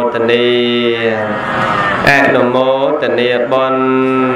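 Buddhist chanting by a man's voice in long, held notes: two drawn-out phrases with a breath between them about two seconds in.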